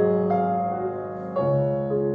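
Grand piano played solo: slow, held notes, with a new note struck early and a deeper chord struck about a second and a half in.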